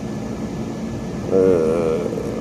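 A man's drawn-out, wavering hesitation "uh" about one and a half seconds in, over a steady background hum.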